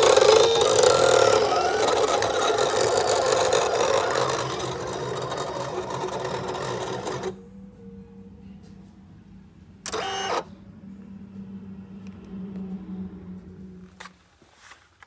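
Silhouette Cameo 4 electronic cutting machine running, its carriage and roller motors whirring as it cuts sheet material. About seven seconds in the machine sound cuts off abruptly, leaving a low steady hum and a brief burst of noise around ten seconds in.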